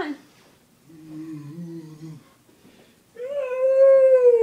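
A teenage boy's wordless vocalizing: a low hum for about a second, then near the end a long, high, held call.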